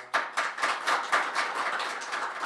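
Audience applauding: many hands clapping in quick, irregular succession, thinning out near the end.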